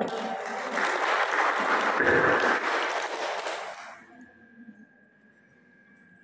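An audience in a hall applauding a closing speech. The clapping dies away about four seconds in.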